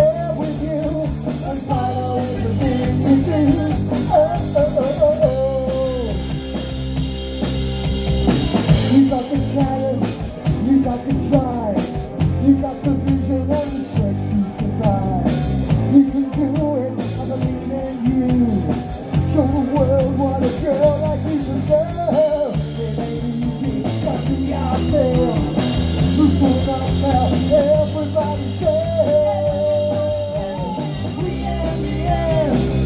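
Live punk rock band playing: electric guitar, bass guitar and drum kit, with a man singing over them.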